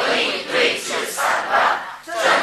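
A person's voice speaking loudly and emphatically, in short phrases.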